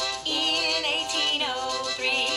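Female voice singing a children's memory song over an upbeat instrumental backing track. The voice comes in about a quarter second in.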